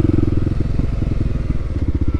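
Kawasaki KLX300's single-cylinder engine, fitted with a stubby stainless aftermarket muffler, running at low road speed under the rider. About half a second in, the steady exhaust note breaks into an uneven pulsing, and it steadies again near the end.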